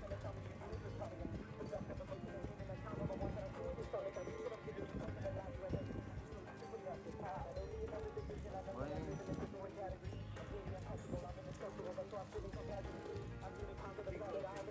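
Running footsteps of a group of joggers on a pavement, a steady patter of many shoes, with people's voices and music going on underneath.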